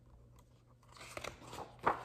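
Picture-book pages being handled and turned: after a quiet second, a few short paper crackles and taps, the last one the loudest.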